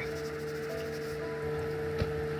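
A steady hum at one unchanging pitch, as from an electrical appliance or fan running in a small room.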